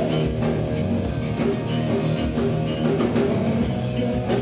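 A rock band playing live: electric guitars and bass over a steady drum-kit beat.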